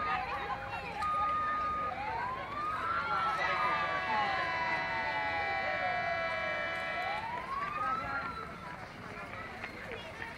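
A siren wailing in slow rising and falling sweeps, with a steady held tone sounding alongside it for about four seconds in the middle, over crowd voices.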